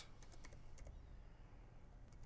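Faint clicking of typing on a computer keyboard, a quick run of keystrokes.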